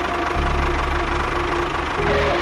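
A small motor or engine running steadily with a dense, noisy sound, over quieter background music.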